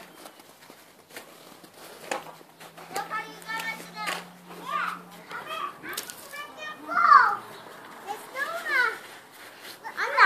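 Young children's voices calling and chattering while they play, not close to the microphone, with a louder high call about seven seconds in.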